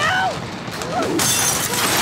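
Film fight-scene soundtrack: a yelling voice near the start, then from about a second in a loud shattering crash.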